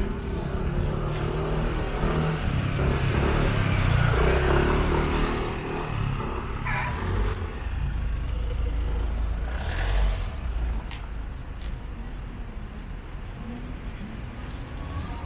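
A car engine running close by, loudest about four seconds in and then fading away, with a brief rush of noise about ten seconds in.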